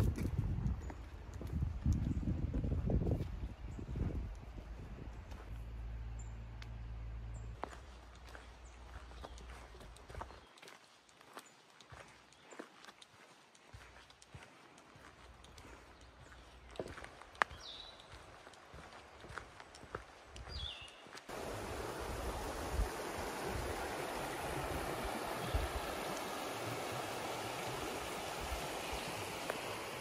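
Footsteps on a forest trail, irregular thuds and crunches on dirt and leaves. About two-thirds of the way through they give way abruptly to the steady, even rush of a mountain creek.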